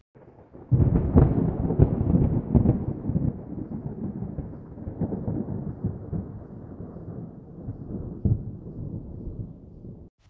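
A rumble like rolling thunder. It breaks in loudly about a second in, crackles through the first few seconds, then slowly dies away.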